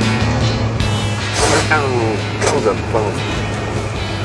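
Background music over the steady low drone of an old lorry's engine running, heard from inside the cab, with a man's short exclamations partway through.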